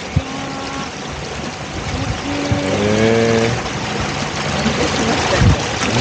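Small motorboat cruising steadily: its engine running with the rushing of water along the hull and wake. A short pitched sound rises over it near the middle.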